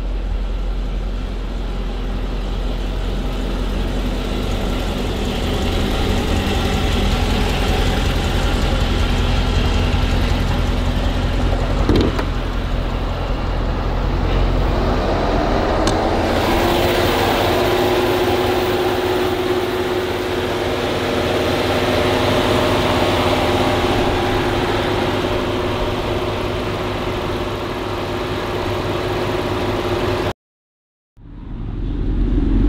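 The 2012 Dodge Charger SRT8 Super Bee's 6.4-litre HEMI V8 running steadily under a constant low rumble. About halfway through, its pitch rises and then holds steady at the higher note. There is a single short knock shortly before.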